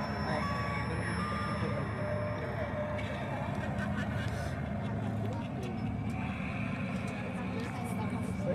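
Indistinct chatter of several voices over a steady low rumble, with a few held electronic tones during the first three seconds.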